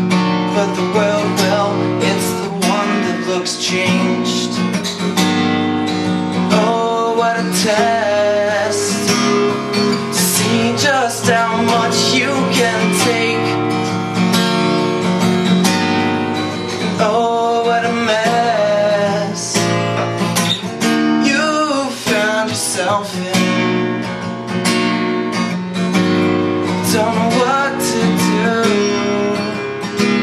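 Acoustic guitar strummed in a steady rhythm, chords ringing between regular strokes.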